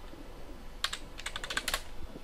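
Computer keyboard typing: a quick run of keystrokes about a second in.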